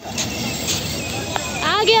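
Steady outdoor crowd noise on a busy walkway, an even hiss-like hubbub with no clear engine note, and a woman's high voice beginning to speak near the end.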